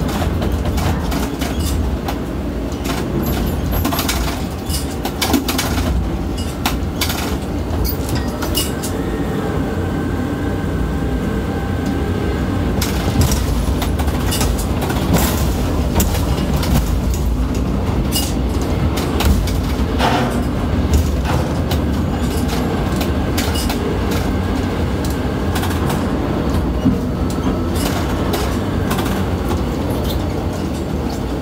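Ship-to-shore container crane heard from the operator's cab as the trolley runs out over the ship and the hoist lowers the spreader down into the hatch: a loud steady rumble with rattles and sharp knocks, most of the knocks in the first several seconds, and a faint whine at times.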